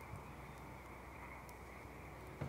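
Faint, steady background hiss with no distinct sound events.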